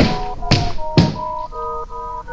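A part-filled plastic bottle being flipped and landing upright on carpet: three sharp knocks about half a second apart, the first right at the start. Background music with a steady melody plays under them.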